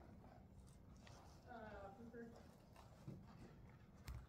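Near silence, with a faint distant voice briefly in the middle.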